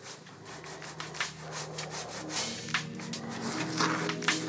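A paintbrush scrubbing acrylic paint across a stretched canvas in irregular scratchy strokes. Quiet background music fades in underneath in the second half.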